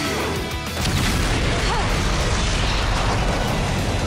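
A large special-effects explosion goes off about a second in and rumbles on under background music. It is the blast of the defeated monster.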